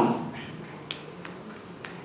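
A few faint, sharp clicks over quiet room noise in a hall, about a second in and again near the end.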